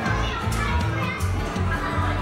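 Music with a bouncy, repeating bass line, with children's voices over it.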